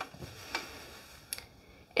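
Quiet room with a few faint, short clicks and soft rustling as a person straightens up from bending over.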